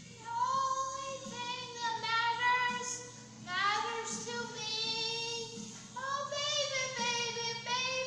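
A woman singing solo in long sustained phrases, her held notes wavering with vibrato, with short breaks for breath about three and a half and six seconds in.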